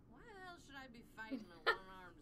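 A high-pitched voice, its pitch sweeping up and down in short wavering stretches, from the anime episode's soundtrack. A sharp, louder sound comes near the end.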